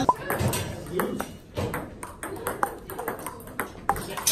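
Table tennis rally: a celluloid ping-pong ball clicking off rubber paddles and bouncing on the table, a quick series of sharp, irregularly spaced hits, some with a brief ringing ping.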